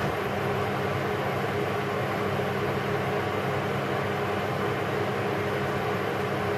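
Steady background noise of a kitchen appliance running: a constant low hum with an even whir over it, with no change in pitch or level.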